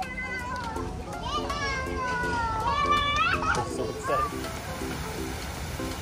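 Children's high-pitched excited voices and squeals while playing, over background music with a steady repeating beat.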